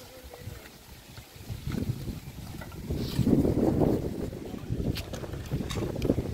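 Wind buffeting the microphone: an irregular low rumble that swells in the middle and then eases, with a few sharp clicks near the end.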